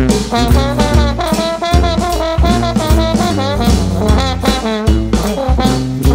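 Brass band with drum kit playing a swinging blues: horns carry the tune with wavering held notes over a steady bass line and beat.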